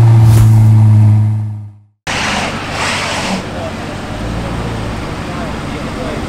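The tail of an intro jingle: a loud held low bass tone that fades out to silence within about two seconds. Then a sudden cut to street sound: steady traffic noise with voices in the background.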